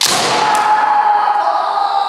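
A bamboo shinai cracks sharply on a kendo helmet in a strike at the start. A long, loud kiai shout follows and is held on, its pitch wavering slightly.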